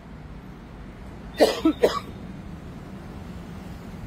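A man coughing in a short fit of about three coughs in quick succession, over a steady low background hum.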